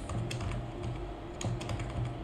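Computer keyboard: a handful of separate keystrokes with short pauses between them.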